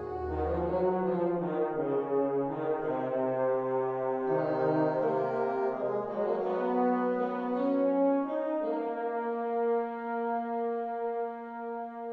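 Notation-software playback of a band arrangement: sampled brass and woodwinds playing sustained chords over moving lower parts. About two-thirds of the way through they settle onto one long held chord, which is fading near the end.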